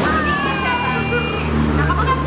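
A road vehicle's engine running with a low, steady rumble, with voices over it.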